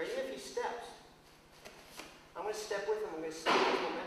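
A man's voice in short, indistinct vocal sounds, then a loud hissing rush near the end.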